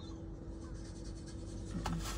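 Faint handling noise of a plastic sports-drink bottle as a person drinks from it, over a steady low hum in a quiet car cabin, with one short click near the end.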